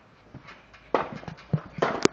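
Feet landing on a backyard trampoline mat, with a sharp thump about a second in and again near the end as the child bounces.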